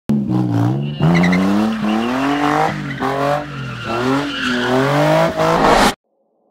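Car engines revving hard, their pitch climbing and falling, in quick cuts from one clip to the next, with tyre squeal from drifting underneath. The sound cuts off suddenly at the end.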